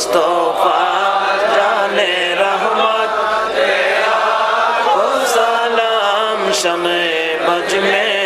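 A large crowd of men chanting a devotional song together in unison, many voices overlapping.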